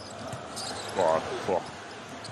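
A basketball being dribbled on the court against the steady noise of an arena crowd.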